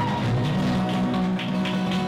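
Acoustic guitars strummed in a steady rhythm by a small live band, with sustained notes ringing under the strokes.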